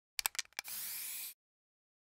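Aerosol spray can: a handful of quick, sharp clicks, then a short hiss of spray lasting under a second that cuts off suddenly.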